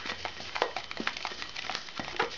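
Latex modelling balloon (ШДМ) rubbing and creaking as it is twisted by hand into a tulip stem: a busy run of short crackles and clicks.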